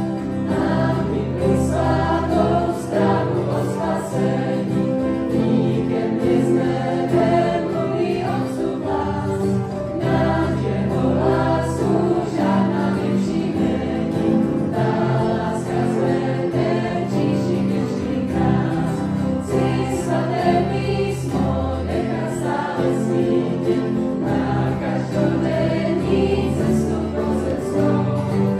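Youth choir singing a Czech hymn in an up-tempo arrangement.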